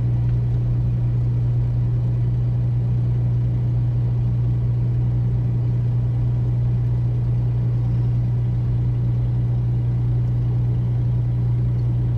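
Inside the cabin of a Toyota Land Cruiser on Mickey Thompson Baja Claw tyres cruising at steady speed: a loud, unchanging low drone of engine and tyre noise.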